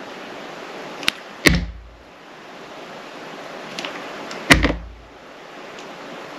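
Utility knife blade drawing through a bar of soft glycerin soap, a steady scraping hiss. There are two sharp snaps with a low thud, about one and a half and four and a half seconds in, and a lighter click just before the first.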